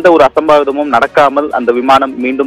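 Speech only: a man reporting in Tamil, talking without pause.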